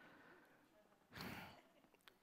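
Near silence, broken by one short breath out, a sigh, a little over a second in, picked up close by a headset microphone.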